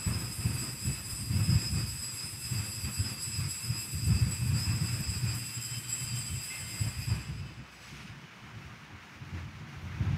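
Altar bells ringing at the elevation of the chalice just after the consecration, a steady high ringing that stops about seven and a half seconds in, over a low uneven rumble.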